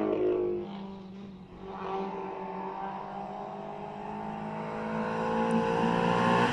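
Race car engine revving hard as the car climbs toward the listener. Its pitch drops within the first second, then rises steadily while the sound grows louder as the car approaches.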